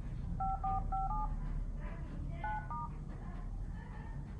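Smartphone dialer keypad tones from an LG V20, one short dual-pitch beep per key press as a service code is typed in. It goes as a quick run of four beeps, a pause of about a second, then another short run.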